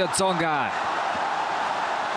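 Tennis arena crowd cheering after a won point: a steady wash of crowd noise, with a man's voice over it in the first half second.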